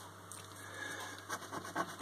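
A coin scratching the coating off a paper scratchcard: faint short strokes that start about halfway through and grow more frequent.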